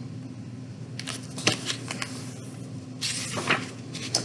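A hardcover book being handled: a few light knocks and clicks about a second in, then a short papery rustle near the end as it is shifted and lowered, over a faint steady hum.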